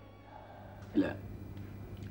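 A pause in the dialogue of an old TV recording: a steady low hum, broken about a second in by one short spoken "la" ("no") from a man.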